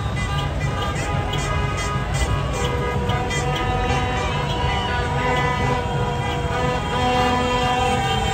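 Car horns honking in celebration in a slow, crowded car convoy, some held in long steady notes, over music with a steady beat and crowd voices.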